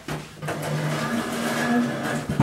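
A mobile phone going off in the background: a steady low hum with a few steady tones, starting a moment in.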